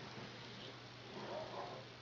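Quiet room tone with a low steady hum, and a faint short sound about one and a half seconds in.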